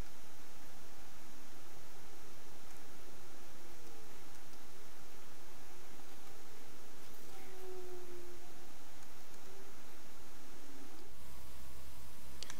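Steady background hiss, room tone, with faint wavering tones in it.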